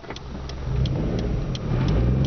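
Suzuki Swift's engine heard from inside the cabin, picking up revs as the car accelerates away, louder from a little before halfway. A light, even tick about three times a second runs over it, like the indicator relay during a turn.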